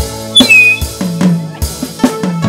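Live band playing with a drum kit: regular drum strokes over sustained bass and keyboard chords, with a brief high whistle about half a second in.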